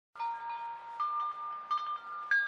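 Chimes ringing a few bright notes one after another, each left to ring on: the first as it begins, another about a second in, and a quick cluster of notes near the end.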